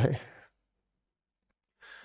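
A man's spoken word trails off, then silence, and near the end a short, faint breath.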